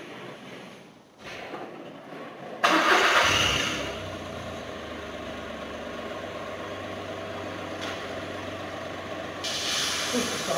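A 2006 Smart Fortwo's small three-cylinder petrol engine is started about two and a half seconds in, heard from inside the cabin. It catches at once with a brief loud burst, then settles to a steady idle. A hiss comes in near the end.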